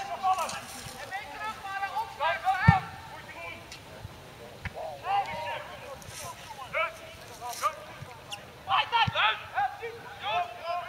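Football players shouting and calling to each other across the pitch in short, high-pitched bursts, with one sharp thud a little under three seconds in.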